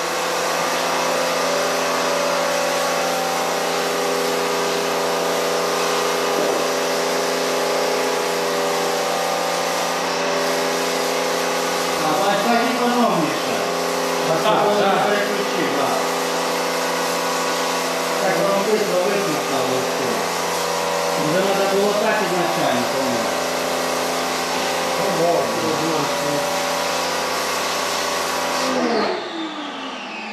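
Stihl electric pressure washer running steadily, its pump motor humming with the hiss of the water jet as it sprays a slatted floor; it cuts off suddenly near the end.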